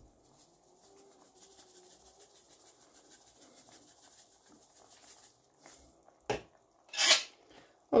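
Faint shaking of dried thyme from a plastic-capped spice shaker jar over a pan, a light patter lasting a few seconds. Near the end come a sharp click and a short clatter as the jar is handled and put down.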